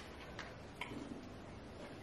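Shepsky (German Shepherd–husky mix) eating small pieces of food off a plate: faint, sparse clicks and smacks of its mouth and teeth against the plate and food, four or five in two seconds.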